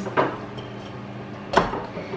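Kitchen handling noise: two sharp knocks about a second and a half apart, the second the louder, as things are handled and set down on a counter, over a steady low hum.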